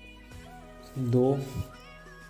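A man's voice saying one drawn-out counting word, with quiet background music running underneath.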